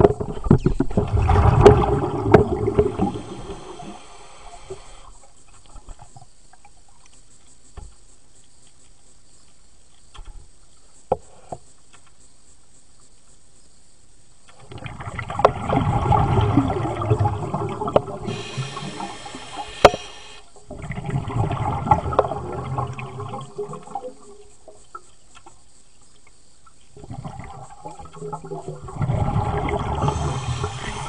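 Diver's exhaled air bubbling out underwater, heard through an underwater camera: several long rushes of bubbles a few seconds each, with quieter stretches between them.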